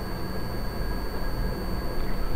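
Steady background noise: a low rumble with hiss and a faint, steady high-pitched whine.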